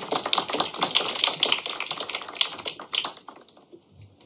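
Small audience applauding: dense, irregular hand claps that thin out and stop a little after three seconds in.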